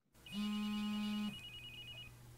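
Smartphone ringing on a desk with an incoming call: a low buzz for about a second under a pulsing, high electronic ringtone that carries on a little longer.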